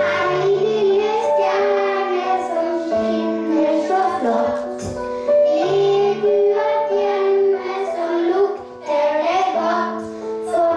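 A young boy singing a Christmas song through a microphone, with other children singing along, over a steady piano accompaniment.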